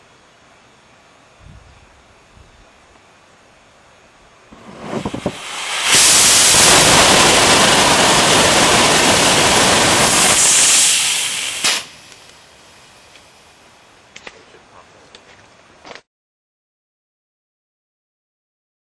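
A 54 mm experimental solid rocket motor with titanium-chip sparky propellant, in a regressive grain design, is static-fired. It lights with a few sputtering pops about five seconds in and comes up to full burn about a second later. It burns with a loud steady rushing roar for about six seconds, then cuts off sharply, followed by a few faint crackles.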